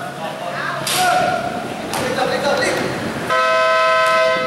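Over the spectators' voices, a court game buzzer sounds: a steady electric horn that starts suddenly near the end and holds.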